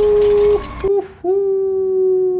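A man's drawn-out "ooh", held loud on one steady pitch. It breaks off a little past halfway, and a second long "ooh" at the same pitch starts about a second later.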